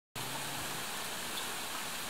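A steady, even outdoor hiss of background noise with no distinct events.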